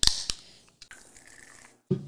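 Aluminium soda can cracked open by its pull tab: a sharp snap followed by a short hiss of escaping carbonation, then faint fizzing.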